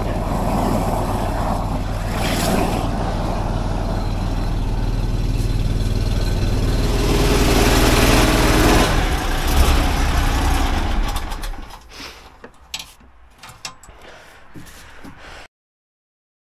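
Sewer jetter's engine and high-pressure pump running steadily, louder for a couple of seconds, then shut down about eleven seconds in. A few light clicks and knocks follow.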